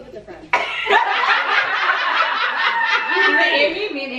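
A group of women laughing together and talking over each other, starting suddenly about half a second in.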